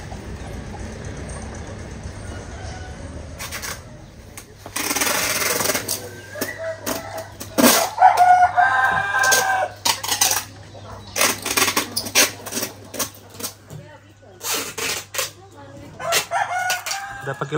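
A minibus engine runs steadily as the vehicle pulls away. After a break, a rooster crows about eight seconds in, and a series of sharp knocks or taps follows near the end.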